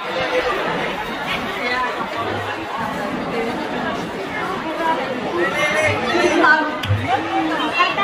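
Large crowd of students chattering, many overlapping voices at once, with a few short low thuds.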